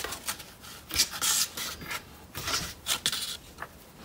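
Two strands of wool yarn being pulled and wrapped around the rim of a paper plate: several short rubbing, scraping sounds of yarn and fingers sliding over the paper.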